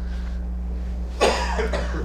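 A man coughs once, a short rough burst about a second in, over a steady low hum.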